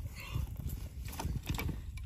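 Several hollow knocks and clunks as a backpack loaded with elk shed antlers is swung off and set down on dry ground, the antlers knocking against each other.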